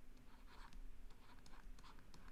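Faint scratching and tapping of a stylus writing on a tablet screen, in a few short strokes.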